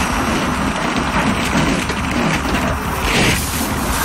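Large cartoon suction machine running, sucking up plastic balls through its hose with a steady loud rush of air and a dense clatter of balls.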